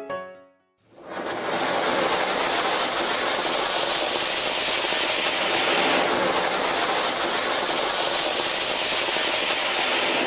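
A ground fountain firework hisses loudly and steadily as it sprays a shower of sparks. The hiss starts about a second in, after a brief silence.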